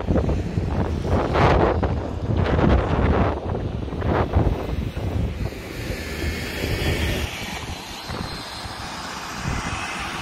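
Wind buffeting the microphone in heavy gusts. From about halfway, the steady whine of an easyJet Airbus A319's jet engines grows as the airliner comes in on approach to land.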